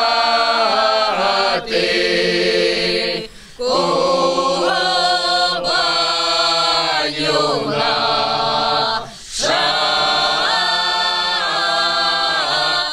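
A mixed choir of men's and women's voices singing a Cossack folk song unaccompanied, with two brief pauses about three and a half and nine seconds in.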